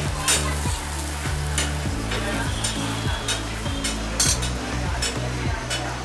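Metal spatula scraping and tapping on a hot dosa griddle, mashing and spreading the topping over a sizzling dosa, with repeated irregular scrapes over a steady frying hiss.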